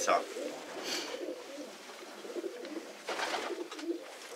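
Racing pigeons cooing in a loft, a low, wavering murmur that goes on throughout, with two short rustles about a second in and just after three seconds.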